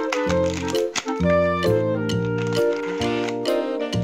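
Background music: a melody of short notes over a bass line that steps from note to note.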